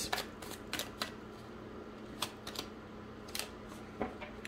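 A tarot deck being shuffled and handled: soft, scattered card flicks and clicks, irregular and spaced out, over a faint steady hum.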